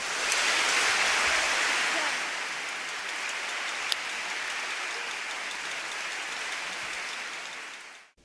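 Concert audience applauding at the end of a song: the clapping swells quickly, is loudest for the first couple of seconds, then holds steady and fades near the end.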